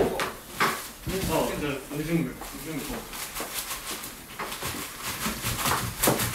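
People talking quietly, with a run of rapid, crisp clicks and crinkles in the second half as a knife cuts on a plastic cutting board among plastic food packaging.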